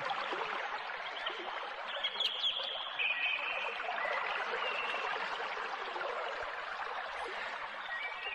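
Steady rushing of running water, like a stream, with a few short, high bird chirps in the first half.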